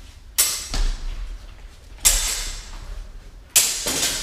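Steel longsword blades clashing three times, about a second and a half apart, each a sharp clang that rings on; a dull thud follows just after the first clash.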